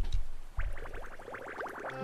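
Cartoon bubble sound effect from an anime soundtrack, a bubble pipe blowing bubbles: a rapid run of short rising blips starting about half a second in.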